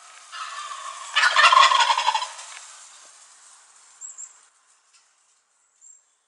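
A wild turkey gobbler gobbling once: a loud, rapid rattling call that swells over the first second, is loudest around a second and a half in, and drops slightly in pitch as it fades out by about three seconds.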